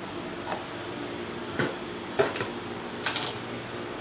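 Gas stove burner running with a steady hiss, with a few faint knocks and clicks scattered through it.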